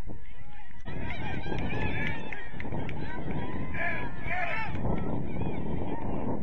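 Wind rumbling on the microphone, with a flurry of short, high, overlapping calls from about a second in until near the end.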